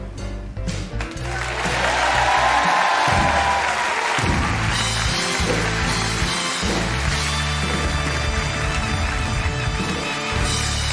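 Background music with a steady bass line. Studio audience applause and cheering swell up about a second in and carry on over the music.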